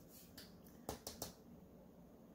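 A few faint, short clicks as tarot cards are handled on the table, the loudest about a second in.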